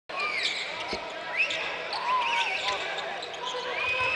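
Courtside sound of a live basketball game: steady crowd hubbub with short high-pitched squeaks of sneakers on the hardwood court, and a single ball bounce about a second in.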